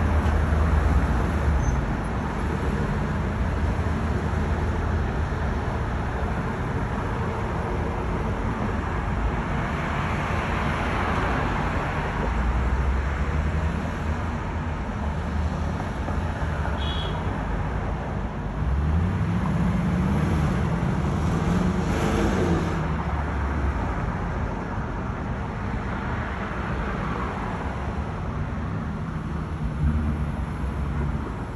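City street traffic: a steady rumble of cars, with one vehicle's engine rising in pitch about two-thirds of the way through and then falling away as it passes.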